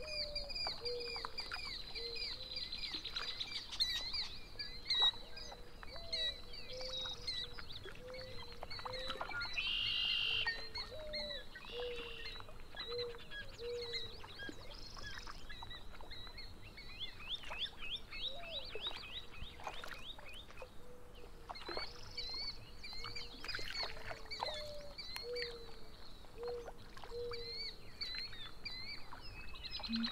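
A chorus of birds calling and singing: many short high chirps and trills, with runs of short, low, falling notes about once a second. A louder harsh, buzzy burst comes about ten seconds in.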